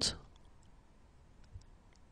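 Near silence in a pause between spoken phrases: the tail of a voice fades out just after the start, then a single faint click about a second and a half in.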